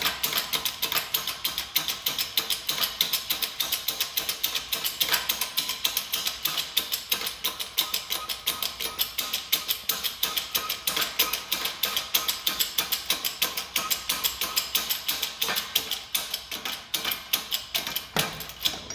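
Shop press being pumped, a steady run of sharp mechanical clicks about five a second as its ram is brought down onto a bearing driver set in a sterndrive bearing housing.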